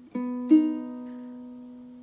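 Single ukulele strings plucked twice, a lighter note just after the start and a louder one about half a second in, each left ringing and slowly fading. The ukulele is being tuned string by string a half step below standard tuning.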